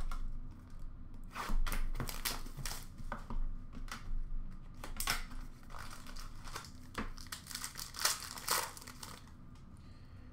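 Trading-card pack wrappers crinkling and tearing as packs are handled and ripped open by hand: a run of irregular rustles and rips, loudest about halfway through and again near the end.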